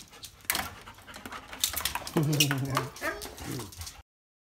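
A dog vocalizing in a drawn-out, whine-like call about halfway through, then a shorter falling call near the end. A few sharp knocks come before it.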